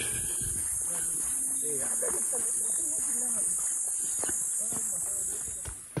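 Steady high-pitched chorus of crickets, with faint voices underneath.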